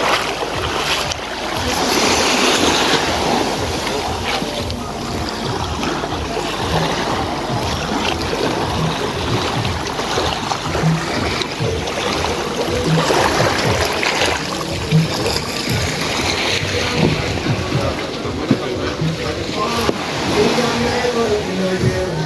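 Beach ambience of small waves and wind on the microphone, with music playing in the background.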